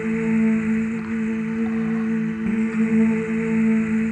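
Slow ambient music: several layered tones held steadily together in a sustained drone.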